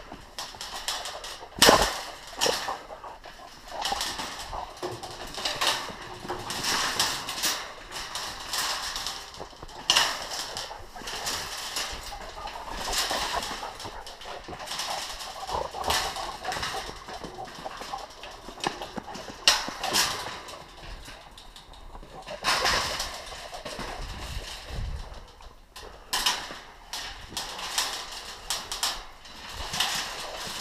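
A welded-wire cage trap holding a feral hog being dragged over grass and dirt: irregular scraping and rattling of the metal panels in uneven bursts, with a sharp metal clank about two seconds in.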